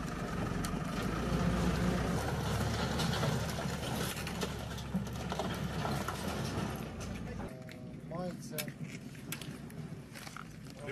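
A JCB loader's diesel engine running steadily, then cutting off sharply about seven and a half seconds in. Faint voices and a few sharp clicks follow.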